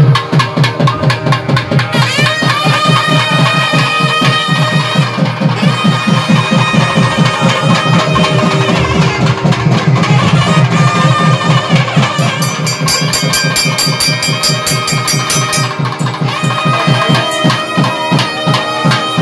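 Live South Indian temple music: a thavil drum beating fast, dense strokes under a nadaswaram's sustained, sliding reed melody. A bright, rapid ringing joins in about twelve seconds in.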